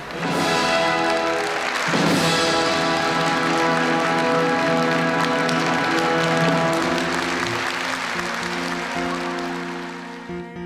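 Orchestral ballet music with long held chords, overlaid by audience applause that is strongest in the first few seconds and fades.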